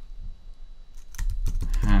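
Typing on a computer keyboard: a quick run of keystrokes starting about a second in.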